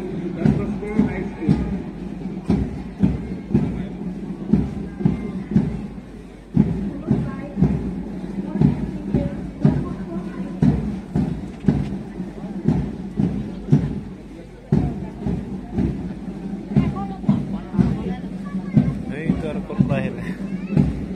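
Parade march music with a steady drum beat, a voice heard along with it.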